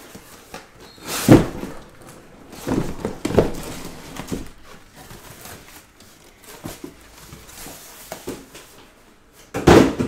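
A cardboard case being opened and handled: scattered thumps and scuffs of cardboard, with the loudest thump near the end.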